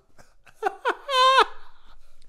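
A man laughing in falsetto: two short laugh sounds, then one long high-pitched note about a second in.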